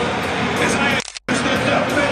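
Loud stadium crowd din mixed with public-address voice and music during player introductions. The sound cuts out completely for a moment about a second in.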